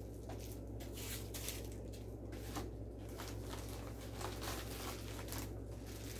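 Faint rustling and crinkling of paper packing as items are lifted out of a care package, with scattered small handling clicks over a steady low hum.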